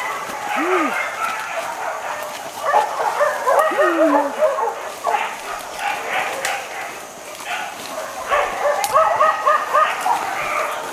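Leashed boar-hunting dogs yipping and barking in quick runs of short, high calls, several a second, about three seconds in and again near the end.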